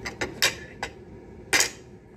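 Metal knife and fork clinking against a ceramic plate as they are handled and set down: a few light clinks in the first second, then one louder clink a little after halfway.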